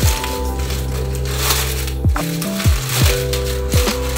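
A crinkly white bag being scrunched and crumpled in the hands, rustling in short bursts. Background music with sustained notes and several deep, pitch-dropping beats plays over it.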